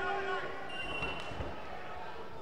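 Two heavyweight wrestlers landing on a padded wrestling mat from a lifting throw: a single dull thud about one and a half seconds in, with voices in the hall.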